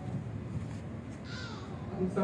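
Low, steady hall background noise in a pause between speech, with one short harsh call, falling slightly in pitch, about one and a half seconds in.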